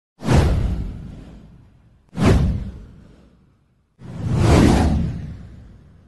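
Three whoosh sound effects on an animated intro title card, about two seconds apart; the first two start sharply and fade away, the third swells up more slowly before fading.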